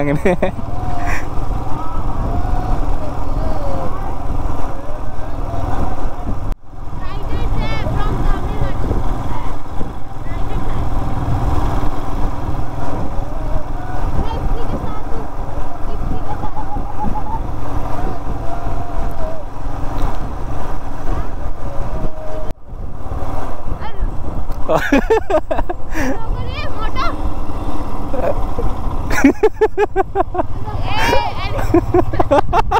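Motorcycle engine running and wind noise on the mic while riding at steady speed, with faint voices over it, louder near the end. The sound drops out briefly twice, about six seconds in and a few seconds before the end.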